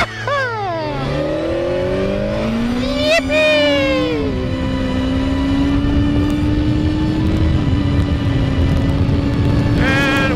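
Sport motorcycle engine accelerating, its pitch climbing in steps with a gear change about three seconds in, then holding a steady note at cruising speed, with wind rushing over the microphone.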